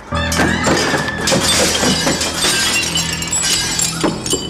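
Glass shattering and objects crashing and clattering onto a tiled floor as shop displays are knocked over, with dramatic background music playing over it.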